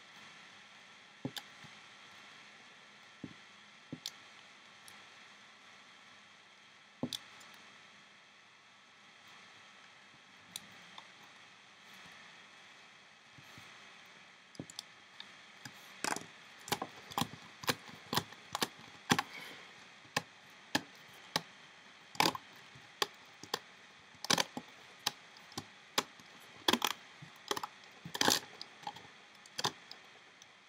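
Sharp plastic clicks and snaps from rubber loom bands and a hook against the pegs of a Rainbow Loom. A few scattered clicks at first, then about halfway through a quick run of louder snaps as the band piece is pulled off the pegs.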